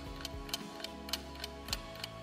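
Countdown-timer clock-tick sound effect, several sharp ticks over a soft, steady background music bed.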